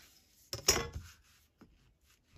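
Steel ruler clinking as it is picked up and set down on paper over a cutting mat: a short cluster of sharp clinks just after half a second in, then a faint tap.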